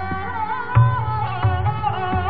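Sarangi bowed in a slow melodic line in raga Gaud Malhar, the pitch gliding and ornamented over a steady drone of ringing strings. Two deep tabla bass strokes sound, about a second in and near the end.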